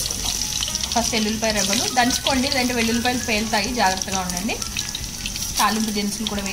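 Hot oil in a pan sizzling steadily as tempering spices are dropped into it, with a voice carrying on over the hiss.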